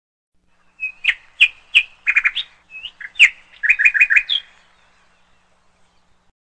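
A small bird chirping: a string of short, sharp chirps starting about a second in, with quick runs of repeated notes, stopping about two-thirds of the way through.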